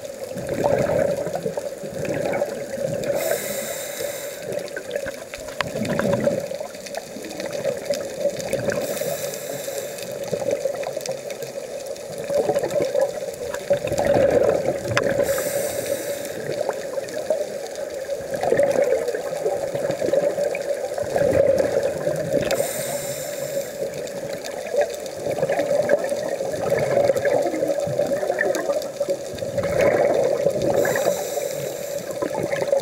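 Scuba diver breathing through a regulator, heard underwater: a short hissing inhalation about every six seconds, each followed by the bubbling of exhaled air.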